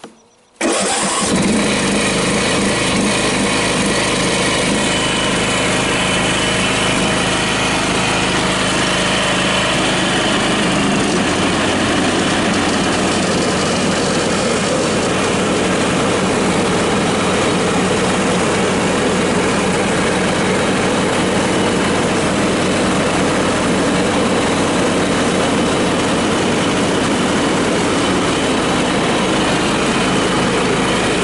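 John Deere L108 riding mower's 18.5 hp OHV engine started on the key: a click, a brief crank, and it catches within about a second, with its brake safety switch bypassed. It then runs steadily, its low note shifting slightly about eleven seconds in.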